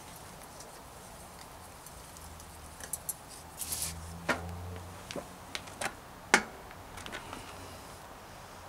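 Scattered, irregular sharp clicks and knocks of a mountain bike's SRAM NX Eagle 12-speed rear drivetrain and crank being handled, the loudest click about six seconds in. A faint low hum comes and goes in the middle.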